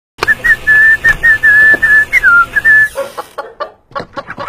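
Whistling: a run of short, clear notes held mostly on one high pitch, broken by brief gaps, with one dip lower just past two seconds in. Near the end come a few short, quieter sounds.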